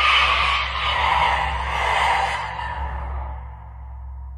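Eerie, breathy whooshing sound effect that swells and eases about once a second over a steady low drone, fading away near the end.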